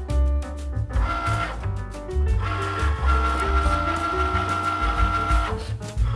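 Background music over the motor of a Cricut Maker cutting machine whirring as it loads the cutting mat and moves its tool carriage. There is a short burst of motor noise about a second in, then a steady whine from about two and a half seconds in that cuts off before the end.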